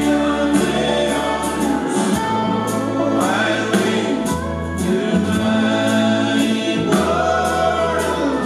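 Live bluegrass band playing, with banjo and acoustic guitars over a steady rhythm and bass line, while several voices sing together in harmony.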